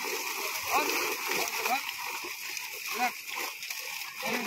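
Water splashing and churning as fish thrash inside a net being lifted in shallow pond water, with men's voices over it.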